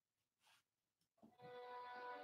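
Near silence, then about a second in a sustained chord played on a software orchestral strings patch ('Smart Strings') fades in and holds. The chord is B–D–F–A–C stacked in thirds, a B minor seven flat five with a flat nine, which sounds kind of weird in a string ensemble.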